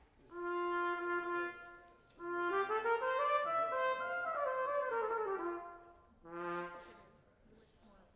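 A brass instrument playing a warm-up: one held note, then a scale that steps up about an octave and back down, then one short note near the end.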